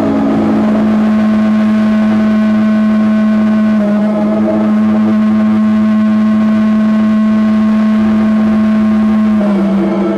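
Sustained electronic drone from live laptop-and-effects electronics: one loud steady low tone with a stack of overtones, its pitch stepping down slightly about four seconds in and again near the end.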